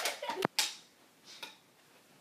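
Two sharp clacks about half a second in, from plastic toy swords striking in a mock sword fight, then a faint knock and low room noise.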